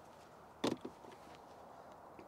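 A single sharp knock about two-thirds of a second in, with a fainter tap just after it; otherwise quiet.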